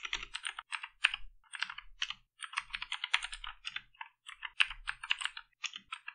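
Typing on a computer keyboard: quick, uneven keystrokes in runs separated by short pauses.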